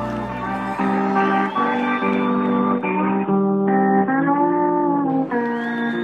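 Country band playing an instrumental passage led by guitar, with long held notes that bend gently in pitch.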